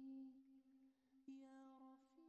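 Faint wordless vocal humming: a held note fades out within the first half-second, then a softer new note begins just over a second in.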